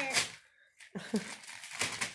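Gift-wrapping paper crinkling and tearing in short rustles as a present is unwrapped, with a brief vocal sound about a second in.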